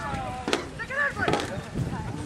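Shouting voices across a rugby pitch, with a high call about halfway through and a single sharp knock about a quarter of the way in.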